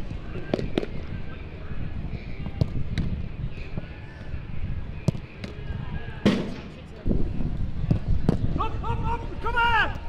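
Footballs being kicked and caught in goalkeeper shot-stopping drills: a series of sharp thuds, the loudest about six seconds in, over a steady outdoor rumble. A person's voice calls out near the end.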